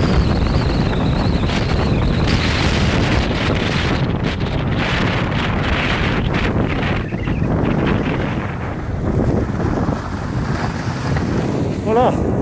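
Wind rushing over the microphone of a camera carried by a skier moving downhill, with skis hissing on the snow. It eases a little and dulls in the last few seconds.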